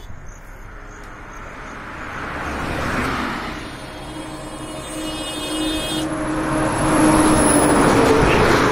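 Road traffic passing on a highway: tyre and engine noise swells as a vehicle goes by about three seconds in, then builds again to a louder pass near the end, with a steady engine hum underneath.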